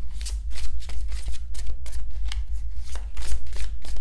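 A deck of large tarot cards being shuffled by hand, cards slid from one hand to the other in a quick run of soft slaps and flicks, several a second.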